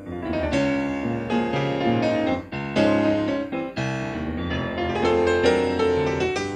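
Grand piano played solo: a loud passage of struck chords and runs begins right at the start, following a soft held chord, with brief breaks about two and a half and nearly four seconds in.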